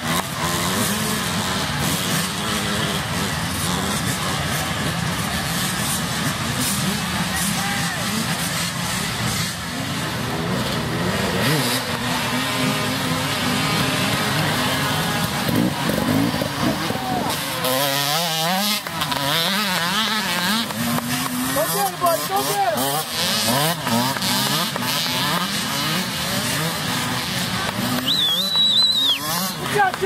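Small youth dirt bike engines running and revving up and down as the young riders pass, with people shouting over them partway through and near the end.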